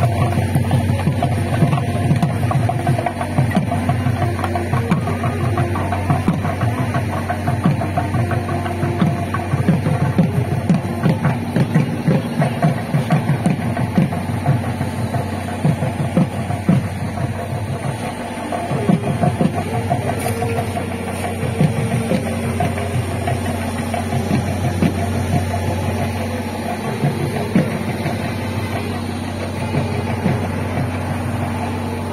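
Procession music with drums beating in rapid, dense strokes over a steady low hum.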